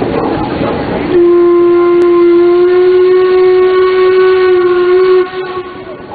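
Paddle steamer's steam whistle blowing one long, steady blast, starting about a second in and cutting off sharply after about four seconds.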